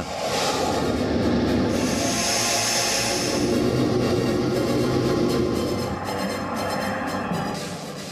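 Fighter jet engines roaring as the jets fly past, the hiss swelling about two seconds in and easing off in the last couple of seconds.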